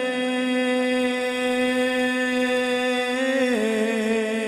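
A man's voice holds one long, steady note in an unaccompanied naat recitation, stepping slightly down in pitch near the end.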